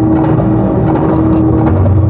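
Loudspeaker soundtrack of a projection show: a dense, rumbling low drone with a held tone that stops just before the end.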